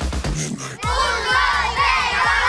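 Background music with a steady beat, joined a little under a second in by a group of children shouting together.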